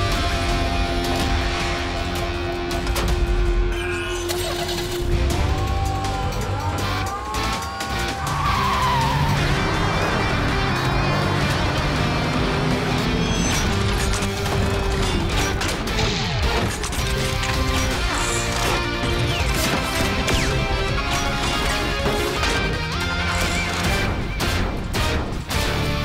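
Cartoon launch sequence: driving action music over sound effects of a car speeding off, with tyre squeals and sweeping whooshes in the middle, then a run of sharp mechanical clanks and hits in the second half.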